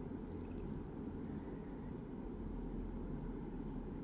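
Quiet, steady low background hum (room tone); the jelly stamper being pressed onto the nail makes no distinct sound.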